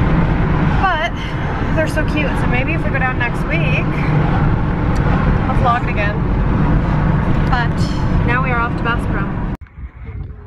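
Steady low road and engine rumble inside a moving car's cabin, with a woman talking over it. The rumble cuts off abruptly near the end.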